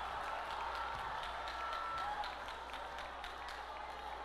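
Congregation clapping in a steady rhythm, about three claps a second, over a murmur of crowd noise.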